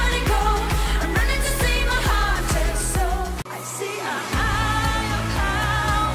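Pop song with a woman singing over a steady beat. About three and a half seconds in it breaks off, and a second pop song with singing starts about a second later.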